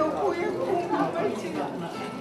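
Speech only: people talking, in a language the recogniser did not transcribe.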